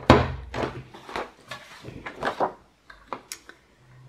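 Plastic envelope punch board clacking as fold notches are punched in a sheet of patterned paper, with paper being shifted and handled between presses. It is a quick series of sharp clacks, the loudest just at the start.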